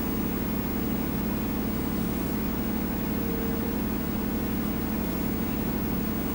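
A steady low hum of running machinery with a faint steady tone in it.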